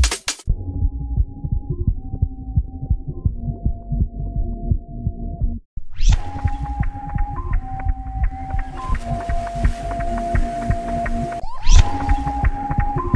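Electronic instrumental music with a steady beat, a bass line and held synth tones. It starts muffled, cuts out briefly about five and a half seconds in, then comes back full and bright, with a rising sweep near the end.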